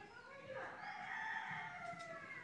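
A rooster crowing once, faint: one long call starting about half a second in that falls in pitch as it ends.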